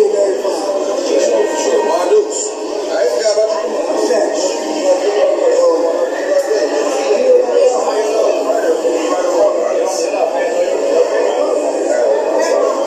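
Voices mixed with music playing back from a video, continuous and thin-sounding with no bass.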